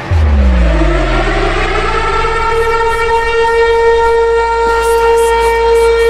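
Hardcore electronic dance music: a deep held bass under falling synth sweeps, then a long held synth note. About two and a half seconds in, light regular hi-hat ticks come in.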